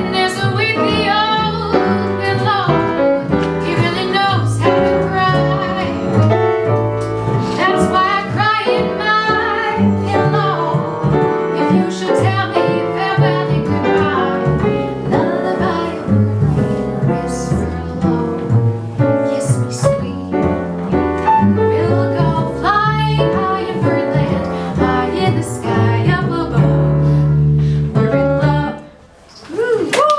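A woman sings jazz with piano and plucked upright double bass accompaniment. The song ends about a second before the close, leaving a short pause.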